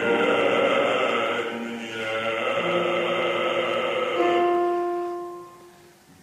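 Operatic bass voice singing with piano accompaniment; the phrase ends about four seconds in and the last held notes fade away.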